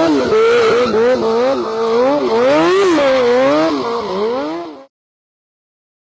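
Sport motorcycle engine revving up and down over and over during a stunt, its pitch rising and falling every half second to a second. It cuts off suddenly about five seconds in.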